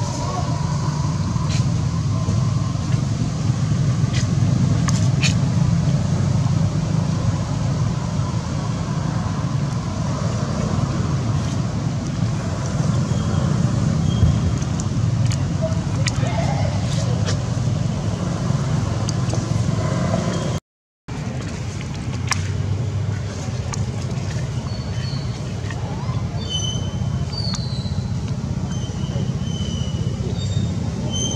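Steady low outdoor rumble, like distant road traffic, with a few short high chirps in the last third. The sound cuts out completely for a moment about two-thirds of the way through.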